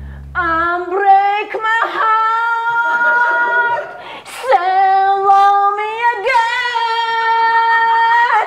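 A woman singing solo and unaccompanied in long held notes. She sings three drawn-out phrases, with a short break about four seconds in.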